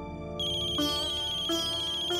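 Mobile phone ringing: a high electronic ringtone starts about half a second in, over soft background music.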